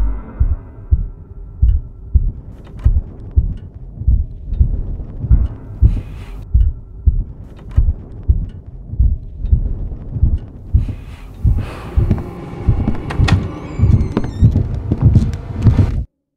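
Horror trailer sound design: a low, heartbeat-like thudding pulse, about two beats a second, runs throughout. A fainter, higher hissing layer builds over it in the last few seconds, and everything cuts off suddenly at the end.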